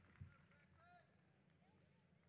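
Near silence, with a few faint, short calls that rise and fall in pitch.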